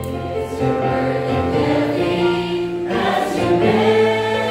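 Mixed church choir of men and women singing a gospel song, holding long notes.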